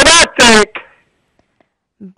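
Speech only: a voice says a short two-syllable word loudly in the first half-second, then it goes quiet.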